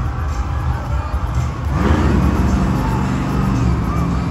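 Monster truck's supercharged V8 revving up about two seconds in, rising in pitch and then held at steady high revs as the truck pulls away into its donut run, over a low rumble and arena music.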